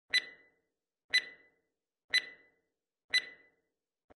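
Film-leader countdown sound effect: four short, high-pitched beeps, one each second.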